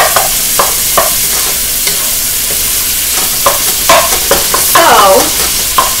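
Cubed chicken sizzling in hot oil in a wok while a wooden spatula stirs it, scraping and knocking against the pan over and over under a steady sizzle, with a few longer scrapes near the end.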